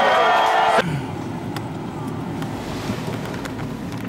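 A live indie rock band playing with a sung vocal line, cut off abruptly under a second in. It is followed by the steady low rumble of a car's cabin.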